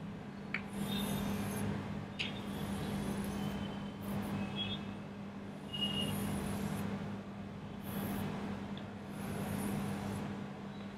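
Chalk scraping on a blackboard in a run of drawing strokes as circles are traced, with a few short high squeaks and a couple of sharp taps, over a steady low hum.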